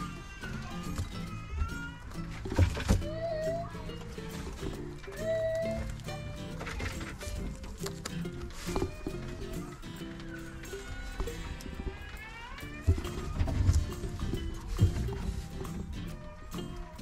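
Background music with held chords and a melody line, with several sharp knocks over it.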